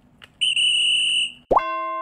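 Video-editing sound effects: a steady high-pitched beep held for about a second, then a quick rising swoop that opens into a sustained, chime-like chord near the end.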